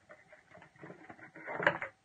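Small irregular clicks and rattles of a plastic acrylic paint tube being handled, growing into a louder clatter of clicks shortly before the end.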